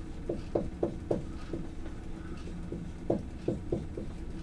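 Dry-erase marker writing on a whiteboard: a string of short, irregular squeaks and taps as letters are written, over a faint steady room hum.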